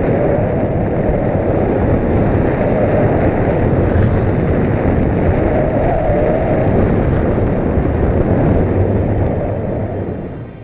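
Loud, steady wind buffeting the microphone of an action camera carried through the air on a paraglider in flight: a dense, low rushing rumble.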